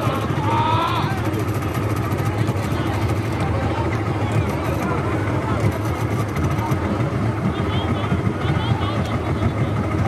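A boat's motor running steadily under the babble of a crowd of voices from a packed market waterfront.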